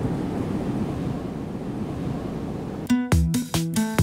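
The rushing whoosh of a TV channel logo sting, fading slowly, then background music with a steady beat starting about three seconds in.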